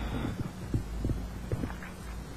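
Low steady hum with several soft, low thumps, picked up by a lapel microphone clipped to the chest.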